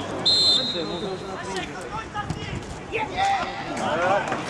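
A short blast on a referee's whistle about a quarter of a second in, over spectators talking and calling out at the pitchside.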